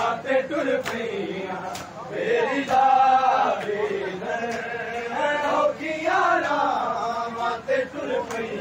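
A group of men chanting a noha, a Shia mourning lament, in unison, the voices rising and falling in long held phrases. Sharp slaps cut through the chant every second or so, the sound of hands striking bare chests in matam.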